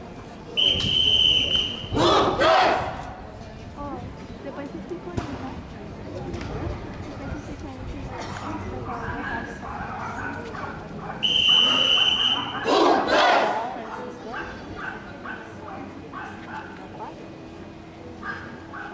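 A bandmaster's whistle gives one steady high blast of about a second, and the children of the drum-and-fife band answer with a loud shout. About ten seconds later the whistle and the shouted answer come again, with quieter chatter from the onlookers between.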